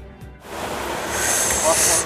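Background music cuts off about half a second in, giving way to a steady rushing of water that grows louder, typical of a waterfall close by. A high steady whine joins it about a second in.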